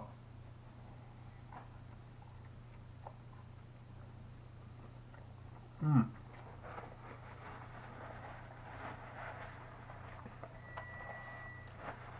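Quiet room with a steady low hum while a man eats a burrito, with faint mouth and chewing noises and a short 'mm' of appreciation about halfway through. A thin, faint, steady high tone sounds for about a second near the end.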